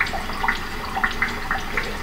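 Water dripping: short drops plinking several times a second, each at a different pitch, over a steady hiss.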